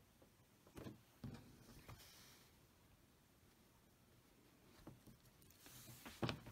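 Near silence: room tone, with a few faint taps and rustles of handling about one to two seconds in and again just before the end.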